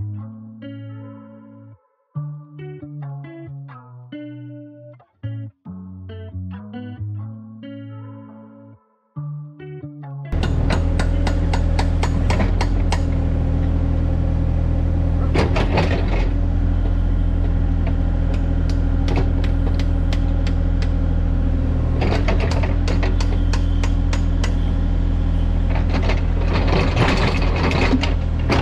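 Background music for about the first ten seconds, then a Kubota KX040-4 mini excavator's diesel engine running loud and steady as its bucket digs into soil, with a few sharp scrapes and knocks from the bucket.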